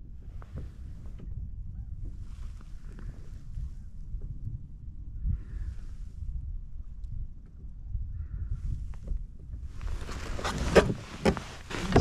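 Steady low rumble of wind and water, with a few faint clicks of handling. About ten seconds in, louder rustling and sharp knocks as gear in the kayak is handled.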